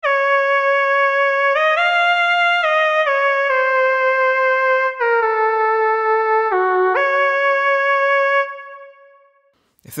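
A monophonic pulse-wave synth lead plays a short melody of about eight notes with a slight pitch wobble, sliding up into one note near the end, then fades out on its reverb tail.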